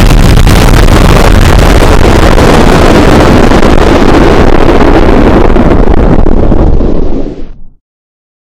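Deliberately blown-out 'earrape' audio: an extremely loud, clipped, distorted wall of noise, heaviest in the bass. The highs die away first, then the whole thing fades and cuts to silence near the end.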